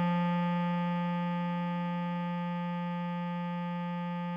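Bass clarinet holding one long low note (written G4), slowly fading, over a keyboard chord whose upper notes drop out about halfway through.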